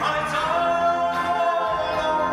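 A male singer holding a long sung note over backing music, the pitch gliding up slightly and holding about half a second in.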